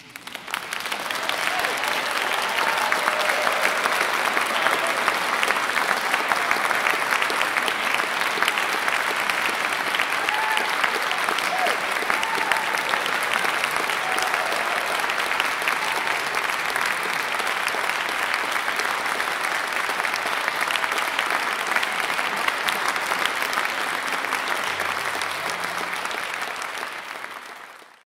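Audience applause breaking out as the music ends, building over a couple of seconds, then holding steady before fading out at the very end.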